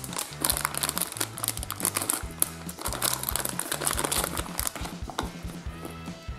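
Plastic blind-bag toy packet crinkling sharply as it is handled and opened, over background music with a steady low bass line.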